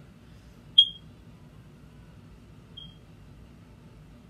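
Two short, high-pitched electronic beeps about two seconds apart, the first loud and the second faint, over a low steady background hum.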